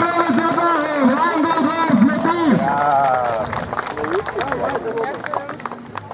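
Speech: voices talking, loudest in the first half, then fainter talk.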